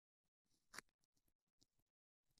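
Near silence, broken by faint scratchy rustles of gloved hands smoothing and molding wet synthetic casting tape around the thumb. One rustle a little under a second in is slightly louder and brief.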